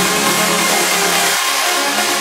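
Uplifting trance music in a breakdown: layered synth chords and pads with the bassline and kick drum dropped out.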